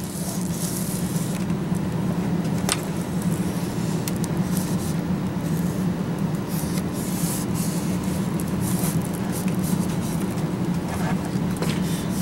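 Covering iron sliding over laminating film on a foam tail surface, giving a soft, irregular hiss, over a steady low hum. One sharp click about three seconds in.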